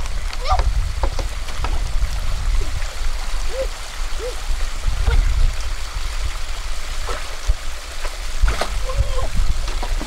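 Stream water running and splashing as a bamboo pole is pushed against the bottom to move a bamboo raft, over a steady low rumble. There are a few short knocks and several brief rising-then-falling calls.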